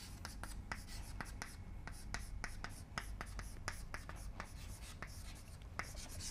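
Chalk writing on a green chalkboard: a quick, irregular run of faint taps and short scrapes as letters are written.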